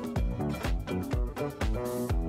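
Electronic dance music from a DJ mix, with a steady kick drum about twice a second under sustained chords and melody lines.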